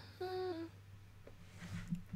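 A person humming: a short hum, then one held about half a second that dips slightly in pitch at the end, followed by quiet.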